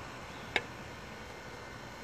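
Steady, even outdoor background hiss, with a single short, sharp tick a little over half a second in.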